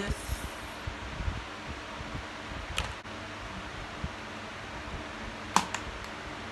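Steady hiss of a room fan, with soft knocks and a couple of sharp clicks from makeup items being handled; the sharpest click comes about five and a half seconds in.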